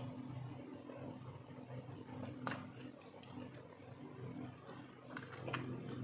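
A person chewing a soft sweet snack quietly, with a few sharp mouth or lip clicks, one about halfway and two near the end, over a low steady hum.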